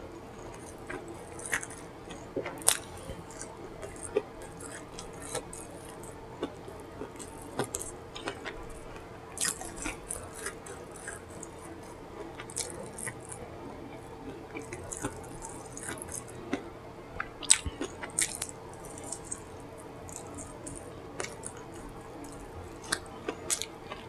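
Close-miked mouth sounds of eating soft, sauced food: wet smacking and chewing with irregular sharp lip and tongue clicks, the loudest a few seconds in and again past the middle. A faint steady hum runs underneath.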